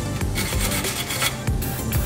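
Steel wire brush scrubbing rust off a car's front control-arm mounting bracket and bolt heads in repeated back-and-forth strokes, a scratchy rasping that comes and goes, over steady background music.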